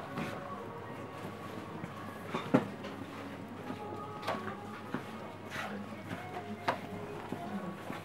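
Background music playing over a shop's sound system, with faint voices, occasional knocks and clothing rustling close to the microphone.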